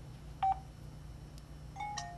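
LG Dare phone sounding two short electronic key beeps, one about half a second in and one near the end, as its buttons are pressed through the silicone jelly case: the covered buttons still work.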